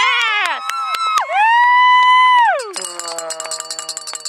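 Added sound effects rather than field sound: a short laugh, then a long held tone that slides up, holds and drops away. About three seconds in, a shimmering wind-chime effect with rapid tinkling strikes begins and fades.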